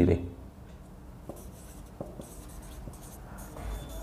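Marker pen writing on a whiteboard: faint strokes with a few light taps of the tip against the board.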